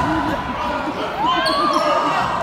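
Basketball game sounds on a hardwood gym floor: a ball bouncing and players' feet pounding, with sneakers squeaking about a second and a half in, and voices echoing in the hall.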